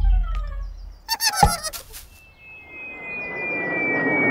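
Cartoon sound effects: a few short falling tones, then a brief high chattering, squawking call about a second in, then a long, slowly falling whistle of objects dropping from the sky, with a rising whoosh beneath it.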